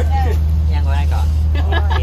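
A steady low hum runs unbroken under women talking.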